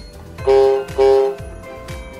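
MQ-6106 electronic toy keyboard sounding two identical held notes about half a second apart, over a low repeating drum beat from the keyboard.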